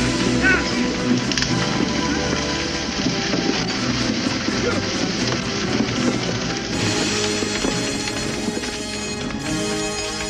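Dramatic film score music with the busy noise of an action scene mixed underneath, including a brief cry about half a second in. The music swells with brighter high instruments about seven seconds in.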